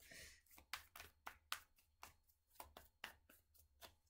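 Deck of tarot cards being shuffled by hand, heard faintly as a soft swish and then a run of short, irregular card taps and slides, about three or four a second.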